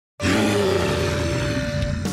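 A dinosaur roar sound effect: one long, low roar that starts a moment in and holds to the end.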